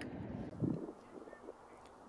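Faint outdoor background with a low wind rumble on the microphone, dropping to near silence a little under a second in.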